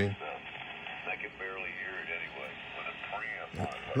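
Lower-sideband voice from a ham station on 7200 kHz coming through the speaker of a Rohde & Schwarz EK 893 HF receiver, thin and cut off above about 3 kHz by its 3.1 kHz filter while the passband tuning is being set.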